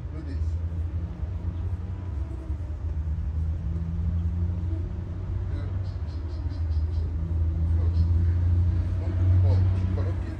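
A steady low rumble that swells near the end.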